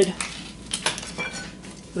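Several light metallic clinks and knocks in quick succession around the middle, from a steel pry bar and hand tools being picked up and handled.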